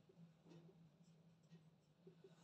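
Faint scratching strokes of a marker pen writing on a whiteboard, barely above a low steady hum.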